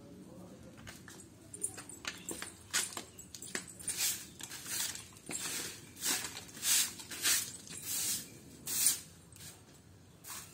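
Handleless bundle broom sweeping a concrete yard: short brushing strokes about one and a half a second, starting a couple of seconds in.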